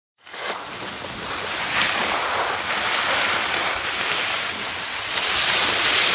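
Steady rushing wind noise on the microphone, rising out of silence in the first half-second.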